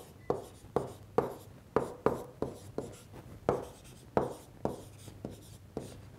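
Stylus writing on a large interactive touchscreen display: about a dozen sharp taps of the pen tip on the screen at irregular intervals, each with a brief ring, as the words are written stroke by stroke.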